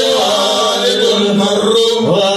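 A male voice chanting a religious chant into a microphone through a sound system, in long held notes that slide and bend in pitch.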